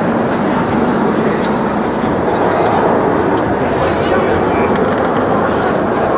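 Indistinct murmur of a stadium crowd, a steady wash of many voices with no clear words.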